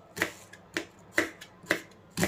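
Kitchen knife slicing through an onion and hitting a plastic cutting board: four sharp chops, about two a second.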